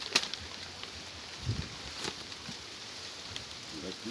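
Stiff cipó vine strands clicking and rustling as they are bent and woven into a basket. A sharp click just after the start is the loudest sound, with a weaker one about two seconds in.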